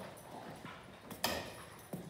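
Faint sounds of a Labrador moving in a concrete kennel run: a few light clicks and one short, sharp noise a little after a second in.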